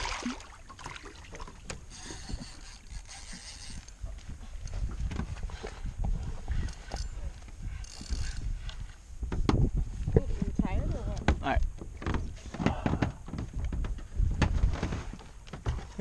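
Wind buffeting the camera microphone over open water, with scattered knocks on the boat. A fishing reel's drag buzzes for about two seconds near the start, and again briefly about eight seconds in, as a hooked tripletail pulls line.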